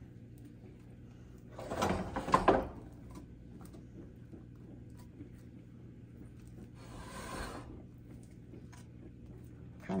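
A spatula spreads thick sourdough batter across a hot cast-iron skillet, with one soft scrape lasting about a second, about seven seconds in. A low steady hum runs underneath.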